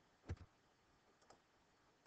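Computer mouse clicks over near silence: a sharp double click about a third of a second in, then a fainter click about a second later.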